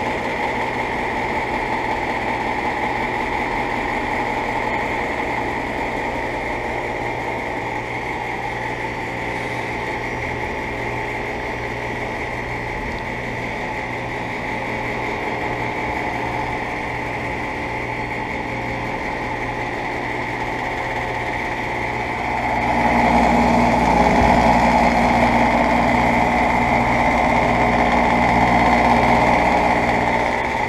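Payne heat pump outdoor unit running: a steady hum from the condenser fan and compressor. About two-thirds of the way through it grows louder, with a slow low pulsing underneath, as it is heard close over the fan grille.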